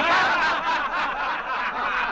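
A crowd laughing, many voices overlapping, breaking out all at once and carrying on.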